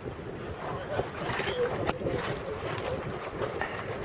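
Wind buffeting the microphone over choppy water, with a short sharp knock about two seconds in.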